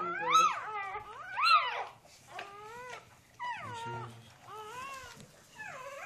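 Newborn puppies crying, about six short high-pitched squeals that each rise and fall in pitch, the two loudest in the first two seconds.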